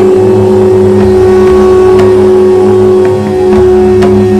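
A conch shell (shankh) sounding one long, loud, steady note over devotional music, with a pulsing low drone underneath.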